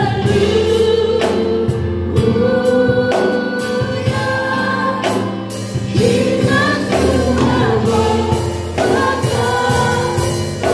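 Gospel worship team of mixed women's and men's voices singing together through microphones, holding long notes that shift pitch every second or so.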